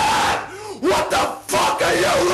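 Several voices shouting together, loud and harsh over a noisy wash, breaking off briefly about half a second in and again around a second and a half in.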